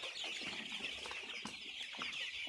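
A flock of 28-day-old Golden Misri chicks peeping continuously: many high cheeps overlapping at once.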